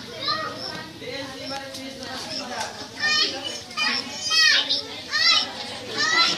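Children's voices as they play, with several loud high-pitched shouts or squeals in the second half.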